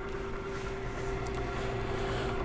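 Overhead laboratory stirrer motor running steadily, a constant hum with one steady tone.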